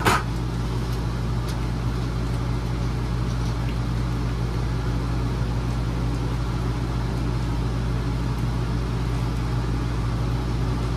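A steady low mechanical hum from an appliance, with a sharp metal clank just at the start and a few light scrapes as a metal spoon stirs ground beef in a steel pot.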